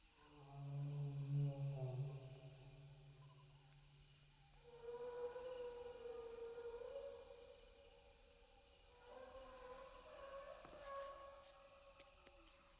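Brachiosaurus singing: three long, drawn-out calls. The first is low and the loudest, and the other two are higher and fainter, one about halfway through and one near the end.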